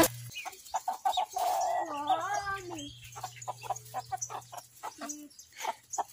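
Chickens clucking in short repeated calls, with one longer, wavering call about a second and a half in.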